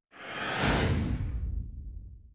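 Whoosh transition sound effect for an animated title card: it swells up in about half a second, then fades away over the next second and a half.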